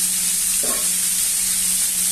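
Chicken pieces sizzling in hot oil in a frying pan as they brown, a steady high hiss over a steady low hum.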